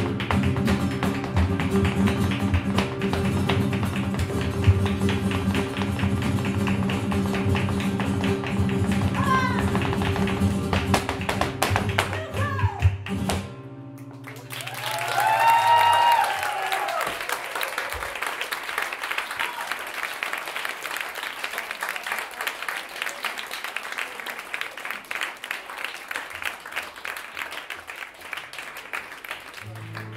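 Flamenco guitars play with percussive dancer footwork until the piece stops abruptly about 13 seconds in. A short shouted vocal cry follows, then audience applause that slowly fades.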